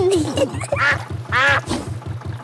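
Cartoon duck quacking twice, over the canal boat's motor chugging in a fast, even low beat.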